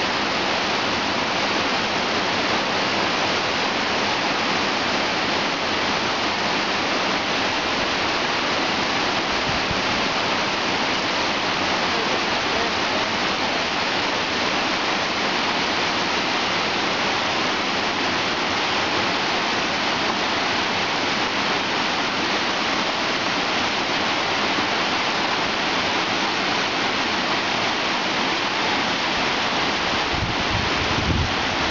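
Waterfalls cascading over Plitvice's travertine barriers: a steady, unbroken rush of falling water.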